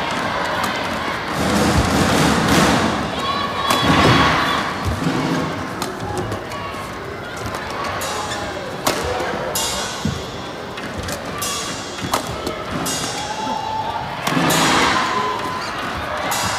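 Badminton rally in an arena: sharp racket strikes on the shuttlecock and thuds from the players, coming at irregular intervals about a second apart. Underneath is steady crowd noise with voices.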